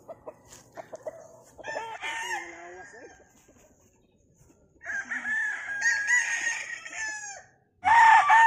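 Gamefowl roosters crowing: a fainter crow about a second and a half in, then a louder, longer crow about five seconds in.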